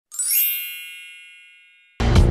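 A bright, sparkling chime sound effect: a quick upward shimmer, then a cluster of high ringing tones fading away over about a second and a half.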